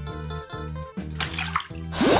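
Light background music with a steady beat, and about a second in a short watery splash and bubbling as a small plastic toy figure is dipped into a bowl of coloured water.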